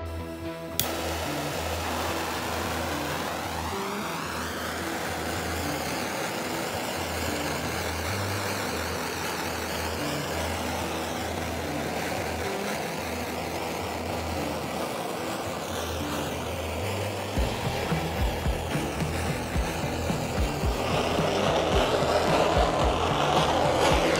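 Gas torch flame hissing steadily as it is passed over freshly poured epoxy to pop the surface bubbles. The hiss starts about a second in and grows louder near the end, over background music with a bass line.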